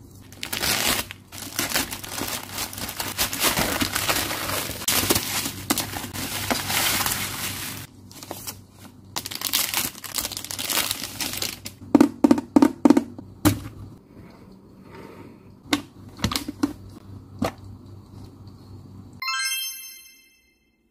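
Crinkling and tearing of a yellow plastic mailer bag and plastic wrap as a pencil case is pulled out. This is followed by quieter rustling and several sharp plastic clicks as the hard plastic suitcase-style pencil case is unlatched and opened. A short bright chime sounds near the end.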